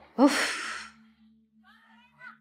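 A woman's single loud, breathy sigh of exasperation, about half a second long, followed near the end by faint distant voices.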